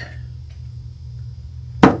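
A single sharp knock near the end, a small paint jar being set down on the worktable, over a steady low hum.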